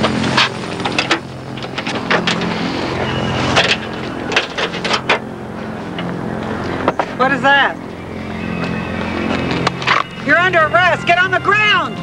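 Knocks and thumps of a scuffle between people, heard over a steady idling vehicle engine. A raised, high-pitched voice yells briefly about seven seconds in and again near the end.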